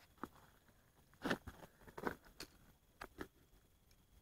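Faint, scattered rustling and crunching, about seven short noises over four seconds, from a person moving and reaching in among ice-coated pipes under a trailer.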